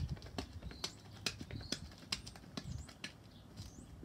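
Sneakers on a concrete sidewalk doing fast agility-ladder footwork (Icky Shuffle: in, out, up): a quick, uneven run of taps and scuffs.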